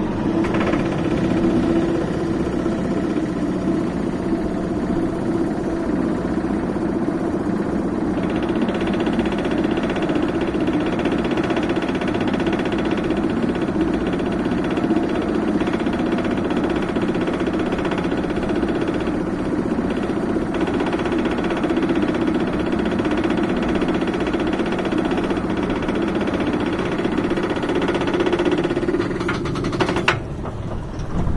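Steel inverted roller coaster's chain lift hill hauling the train up: a steady, loud mechanical rattle with fast clicking from the chain and anti-rollback. It thins out near the end as the train nears the crest.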